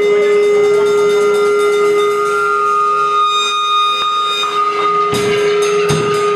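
Amplified electric guitar holding one steady, high drone tone, feedback-like, with fainter higher tones sounding above it. About five seconds in, the drum kit comes in with its first hits.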